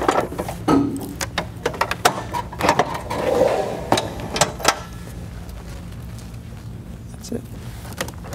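Knocks and clicks of the hard plastic housing of an ExpressVote voting unit being handled, lowered and set down into its case, several over the first few seconds, then a steady low hum.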